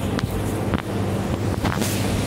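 Rumble and rustle on a handheld phone's microphone, with several short clicks.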